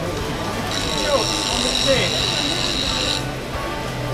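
Bench grinder sharpening a woodturning tool: a steady high whine that starts about a second in and cuts off after about two and a half seconds.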